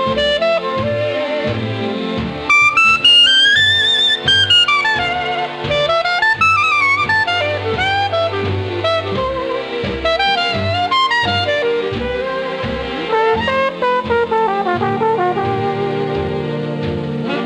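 Instrumental jazz: brass and saxophone playing a sliding melody over a pulsing bass line, with a high phrase a few seconds in.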